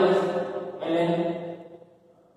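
A man speaking in long, drawn-out syllables, two phrases that trail off near the end.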